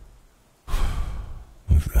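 A man's long breathy sigh, close to the microphone, lasting under a second. Near the end he starts speaking again.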